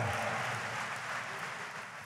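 Conference audience applauding, the clapping fading away over the two seconds.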